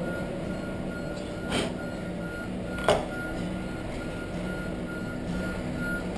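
A high steady beep that keeps switching on and off over a low hum, with two sharp knocks, the louder about three seconds in, of a tool on a wooden workbench.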